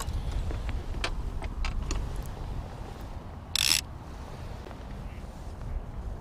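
Low, uneven background rumble on an open boat, with scattered light clicks and a brief hiss a little over three and a half seconds in.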